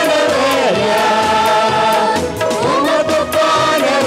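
Women's worship group singing a devotional praise song together into microphones, over amplified backing music with a steady beat.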